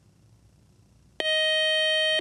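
A quiz show's electronic time-up buzzer: one steady, loud beep of about a second, starting a little over a second in after near silence, signalling that time has run out with no answer given.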